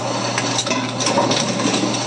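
Bourg SBM booklet maker running, a steady motor hum under mechanical clatter with scattered short clicks as a stitched and folded booklet passes into its trimmer.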